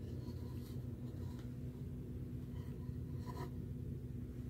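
Faint rubbing and light scrapes of a picture card being handled and laid down on a felt cloth, a few brief touches with the clearest near the end, over a steady low hum.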